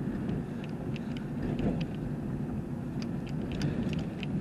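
Steady low rumble of a car driving, heard from inside the cabin, with a few faint ticks scattered through it.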